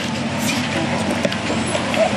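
Steady street noise: a low hum with traffic character under faint chatter of people nearby.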